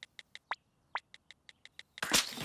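Cartoon smartphone keypad taps, a quick run of light clicks at about seven a second. Two short rising whistle-like sweeps come in about half a second in and again about a second in.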